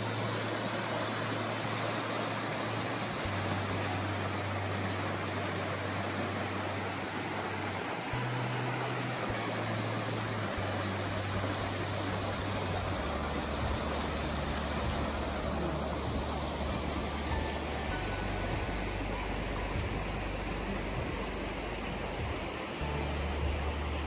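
Steady rushing of a shallow river over rocks, mixed with soft background music whose low bass notes change every few seconds.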